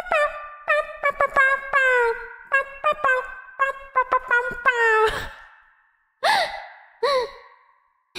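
A young woman's voice making wordless sounds: a quick run of short sung or hummed notes, then two falling sighs near the end.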